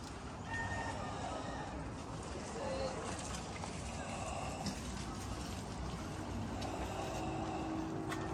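Faint, indistinct voices over steady outdoor background noise.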